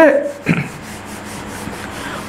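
A whiteboard duster rubbing across a whiteboard, wiping off marker: a steady scrubbing hiss that starts about half a second in.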